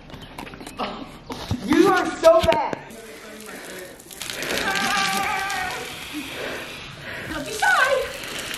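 Voices without clear words: short vocal sounds, then in the second half a long drawn-out cry held for about three seconds over a steady hiss.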